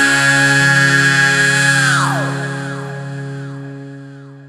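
Rock song ending: a male singer holds a belted high note over the band's final sustained chord. About two seconds in, the note drops away in a downward slide that repeats several times, fainter each time, while the chord rings on and fades.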